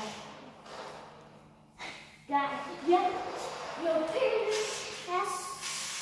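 A toy remote-control car's whirring fades away over the first two seconds; from just past the middle, children's high voices call out in several short cries without clear words.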